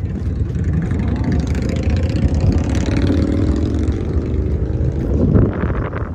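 Dodge Challenger Scat Pack's 6.4-litre HEMI V8 running with a steady deep exhaust rumble. It swells briefly louder about five seconds in.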